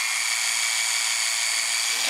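Cordless electric spin scrubber running, its round brush head spinning freely in the air: a steady, high-pitched motor whine.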